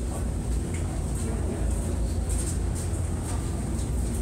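Steady deep rumble of a large volume of water pushed through Hoover Dam's passages, heard inside a rock tunnel, with a few faint clicks over it.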